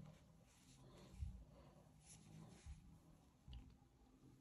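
Near silence, with three faint soft bumps from hands working a crochet hook through thick yarn.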